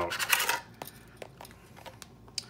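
Springs and follower of an aluminum HK 33/93 40-round magazine being drawn out of the magazine body and the parts set down: a short rustle, then a few light, separate metal clicks.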